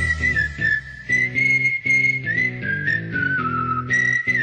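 Instrumental passage of a pop song: a whistled melody sliding between notes over rhythmic plucked guitar chords.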